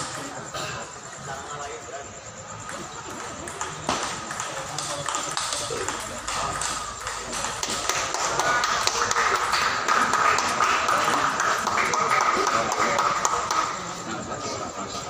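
Table tennis balls clicking sharply off paddles and tables, over spectators' voices that grow louder in the second half.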